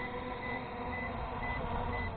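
Aosenma quadcopter drone's motors spinning at idle on the ground, a steady whine, with a short high electronic beep repeating about twice a second.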